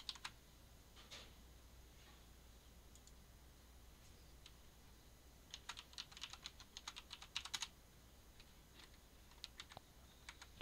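Faint computer keyboard typing: a quick run of keystrokes from about five and a half seconds in, lasting about two seconds, with a few isolated clicks elsewhere, over a faint low hum.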